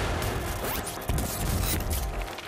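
TV title sting: a dense, noisy burst of sound effects over music that starts suddenly, with a rising sweep a little under a second in.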